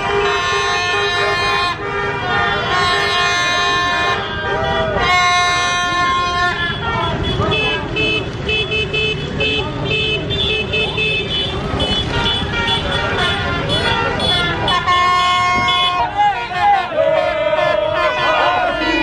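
Horns blaring in several long, held blasts in a street celebration, over a crowd of voices shouting and a constant noise of traffic.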